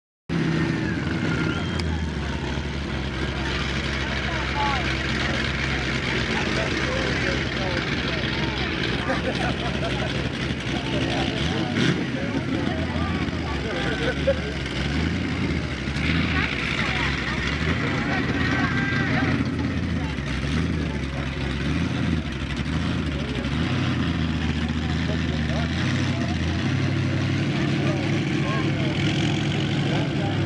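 Heavy vehicle engines running, their pitch stepping up and down as they rev, under the chatter of a crowd of onlookers.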